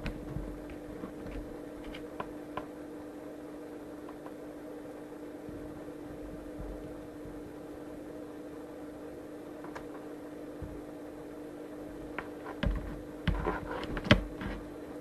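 Steady electrical hum with one clear mid-pitched tone, from powered-up bench electronics, with a few faint clicks; near the end, several louder knocks and clicks of something being handled.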